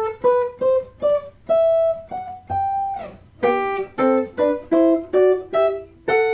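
Hollow-body archtop electric guitar picking a run of two-note sixths through a G scale, short plucked pairs about two to three a second. The run climbs, starts lower again about halfway through, and climbs once more.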